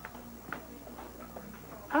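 Quiet room tone with a few faint soft knocks, then near the end a woman's voice exclaiming a falling "Oh".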